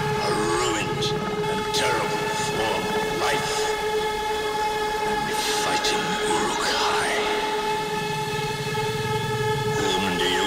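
Beatless breakdown in an industrial hardcore track: a sustained horn-like synth drone held on one pitch with its octave, with sweeping, gliding effects passing over it.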